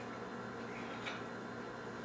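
A faint click of a small calendar tile knocking against its holder as the day tiles are swapped, about a second in, over a steady low background hum.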